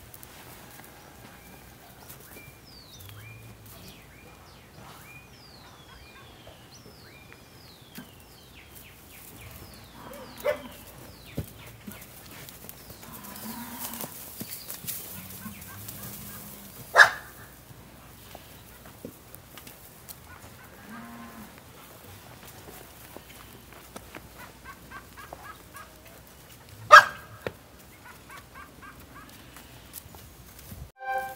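Farmyard animal sounds: a bird's short falling chirps repeated over the first few seconds, then a few brief, loud animal calls, the loudest near the middle and near the end.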